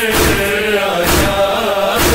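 A noha, a Shia mourning chant: a man's voice sings a drawn-out lament over a steady beat that falls roughly every three-quarters of a second.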